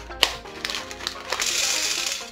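Plastic bag of pony beads crinkling as it is handled, then plastic beads pouring out of the bag onto a metal cookie sheet in a dense rattle through the second half.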